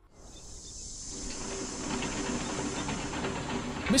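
A steady hiss that fades in over the first second or two and then holds, with faint tones and light ticks beneath it.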